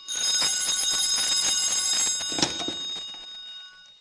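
A telephone bell ringing with a steady metallic ring. About two and a half seconds in there is a short knock, and the ringing then fades away.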